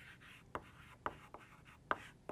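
Chalk writing on a blackboard: faint scratchy strokes broken by a few sharp taps as the chalk strikes the board.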